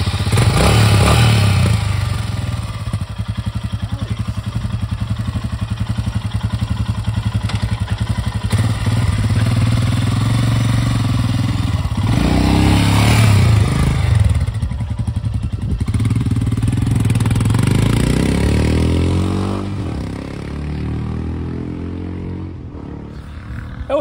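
Royal Enfield Himalayan's 411 cc single-cylinder engine, just started, idling with a steady rapid pulse. It is revved up and back down about twelve seconds in, then accelerates away and grows quieter over the last few seconds.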